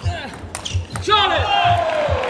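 A few sharp clicks of the table tennis ball early on, then one player's long shout at the end of the point, falling in pitch and lasting over a second, over low thuds of footwork on the court floor.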